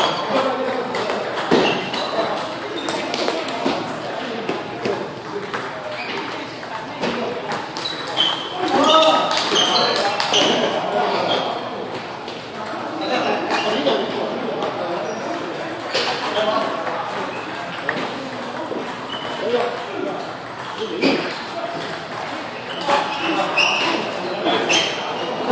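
Table tennis ball rallies: sharp, hollow pings of the celluloid ball struck by paddles and bouncing on the table, coming in runs with short gaps, over background chatter that echoes in a large hall.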